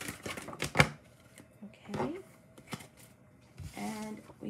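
A deck of tarot cards being shuffled and handled: a quick run of sharp clicks and card snaps in the first second, then a few scattered taps as a card is drawn.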